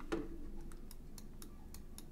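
A run of faint, light clicks, evenly spaced at about four or five a second, after a soft knock near the start.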